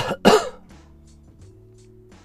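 A man coughs twice in quick succession, loud and close to the microphone, in the first half-second. Quiet background music with a light steady beat plays underneath.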